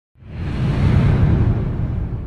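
Cinematic whoosh sound effect with a deep rumble underneath, swelling up over the first second and then slowly fading, as an animated title appears.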